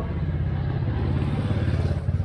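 A motor scooter's small engine running as it rides up and passes close by, growing louder and peaking near the end.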